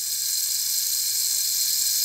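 A steady, loud hiss, strongest in the high treble, over a faint low hum. It holds level throughout, with no speech or music.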